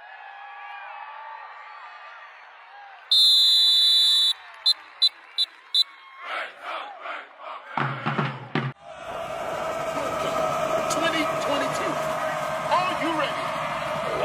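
A drum major's whistle: one long blast about three seconds in, then four quick short blasts, the count-off signal to the band. Drum strokes answer, and from about nine seconds the full marching band is playing, louder than the crowd chatter heard at the start.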